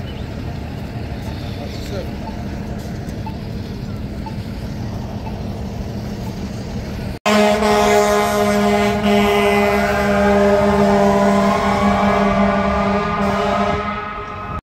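Street traffic noise on a busy city street for about seven seconds. Then, after a sudden cut, a louder steady drone with a slowly rising whine over it.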